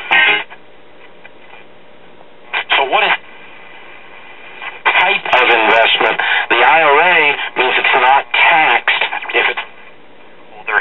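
AM broadcast sound from the repaired 1939 Zenith 4K331 battery tube radio's speaker as the dial is turned: a moment of programme, a couple of seconds of faint hiss between stations, a short snatch of a station, then from about five seconds in a station carrying a voice with a wavering pitch. The set is working and pulling in stations after the repair.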